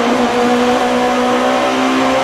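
Rally car engine heard from inside the cockpit, running hard at steady revs with an even, unchanging pitch.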